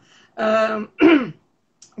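A woman clearing her throat with a two-part 'ahem', the first part held at a steady pitch and the second falling.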